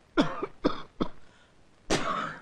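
A man coughing: four short coughs spread over about two seconds.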